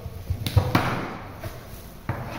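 Kitchen knife slicing through a red onion and knocking on a wooden chopping board: several sharp knocks, the loudest about half a second in, followed by a brief crunch of the cut.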